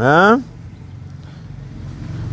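A man's voice ends a chanted phrase of Quran recitation in the first half-second, followed by a pause filled with a steady low rumble.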